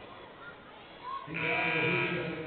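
A loud, drawn-out shout from a voice in the gym, starting a little over a second in.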